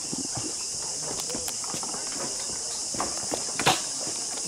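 Footsteps knocking on the planks of a rope suspension canopy walkway, with scattered knocks and a sharper one near the end. Under them runs a steady high insect drone from the rainforest.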